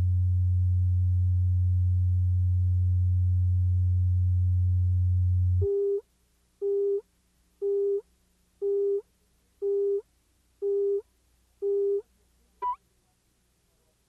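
Videotape leader audio: a steady low reference tone for about six seconds, then seven short countdown beeps, one a second, and a brief higher blip just after them.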